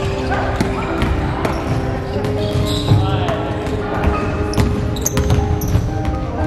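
Basketball bouncing on a hardwood gym floor: several irregular thuds during play, among voices in the large hall.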